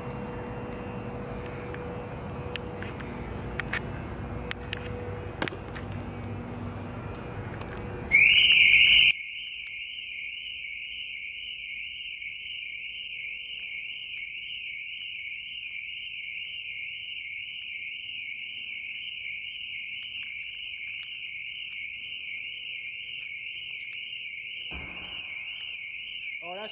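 Car alarm going off, set off by someone coming close to a parked car: a loud blast about eight seconds in, then a continuous high warbling tone.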